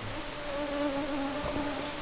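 A flying insect buzzing in one steady drone that wavers slightly in pitch.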